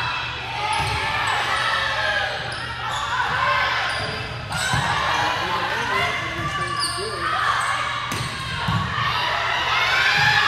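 Volleyball rally in an echoing gym: players and spectators keep calling and shouting while the ball is struck several times with short thuds. Sneakers squeak briefly on the hardwood floor.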